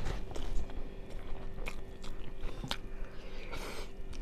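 Close-up chewing of a person eating rice and curry by hand, with irregular small clicks and smacks of the mouth and a brief hissy rustle near the end.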